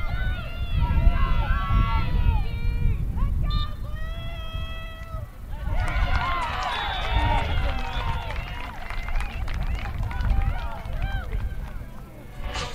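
Many high-pitched voices of lacrosse players and sideline spectators shouting and calling over one another during live play, over a steady low rumble. The calls thin out near the middle and pick up again into a dense burst of shouting about six seconds in.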